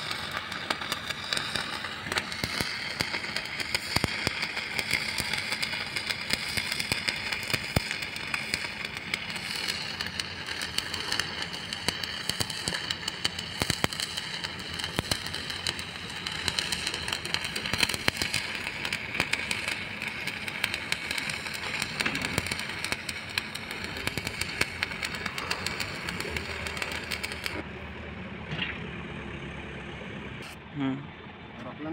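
Stick (shielded metal) arc welding on steel plate: the electrode's arc crackles and sputters steadily with many small pops, then stops a couple of seconds before the end.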